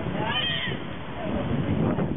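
Crowd chatter with a brief high-pitched cry, rising and then falling in pitch, about half a second in.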